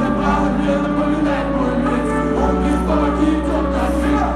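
Live pop-rap concert music over a stadium sound system, with a huge crowd singing along, recorded from the stands. Held bass notes under long sung lines, the bass shifting to a new note about two and a half seconds in.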